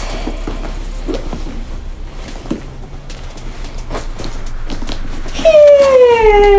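Soft rustling and handling of a cloth dust bag as a handbag is drawn out of it, over a low steady hum. About five and a half seconds in, a loud high pitched sound sets in and falls slowly in pitch.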